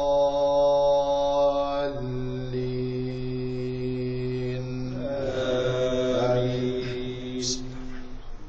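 Drawn-out Quranic chanting by a man's voice through a mosque microphone. Long held notes step to a new pitch about two seconds in and again about five seconds in, and the voice stops near the end.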